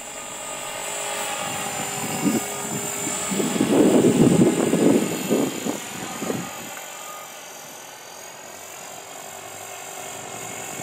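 EXI 450 electric RC helicopter in forward flight: a steady high motor whine under the whoosh of its Smartmodel scale weighted rotor blades. The sound swells to its loudest about four to five seconds in, then eases off.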